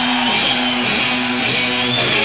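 Electric guitar opening a live blues-rock band performance, playing a repeated riff of short notes.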